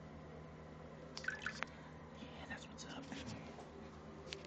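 Water dripping and splashing faintly in a toilet bowl, with a quick cluster of drips about a second in and a few more later.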